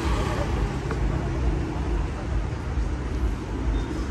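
Street traffic noise: a steady low rumble of passing vehicles on a city road.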